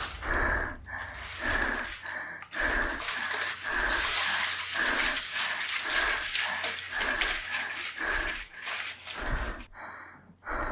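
Rapid, heavy panting, about two breaths a second.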